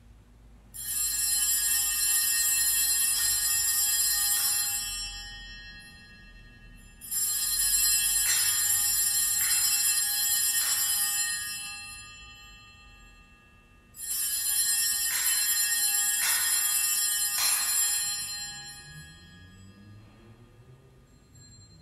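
Altar bells (a cluster of Sanctus bells) shaken in three long rings, each lasting about four seconds before dying away, marking the elevation at the consecration.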